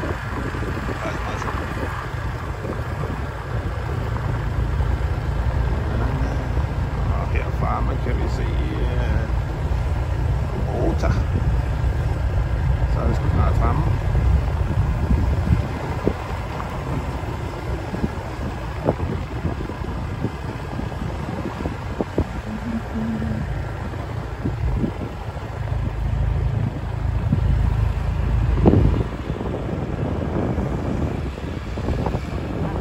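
Wind rushing over the microphone and the low rumble of a vehicle riding along a bumpy dirt track, easing a little in the middle and heavier again near the end.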